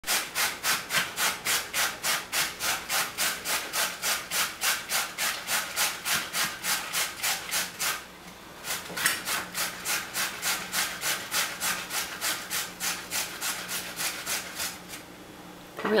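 Rhythmic rubbing strokes, evenly spaced at about four a second, with a short break about halfway through, stopping shortly before the end.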